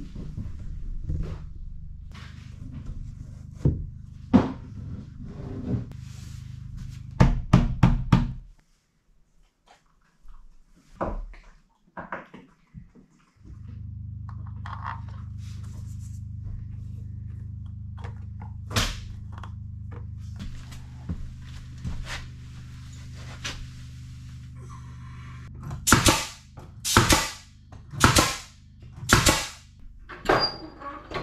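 Scattered knocks and clunks of objects being handled, over a low steady hum that cuts out twice. Near the end comes a run of about five loud, sharp knocks.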